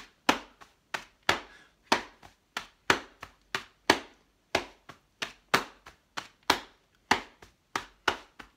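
Hambone body percussion: both hands slapping the body in a steady rhythm, about three sharp slaps a second.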